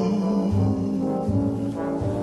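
Orchestral brass holding steady chords in an instrumental fill between sung lines, over a bass line.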